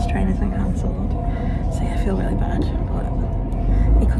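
A woman talking over the steady low rumble inside a moving passenger train carriage.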